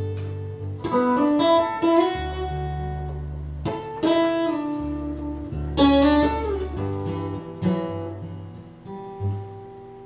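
Solo acoustic-electric guitar played fingerstyle through an amplified pickup: an instrumental piece of ringing picked notes over held bass notes, with a few sharp plucked accents and some notes sliding in pitch.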